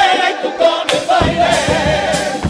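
Carnival comparsa's male chorus singing in harmony to Spanish guitar accompaniment. About a second in, sharp percussion beats with a deep low end come in under the voices, at roughly three to four a second.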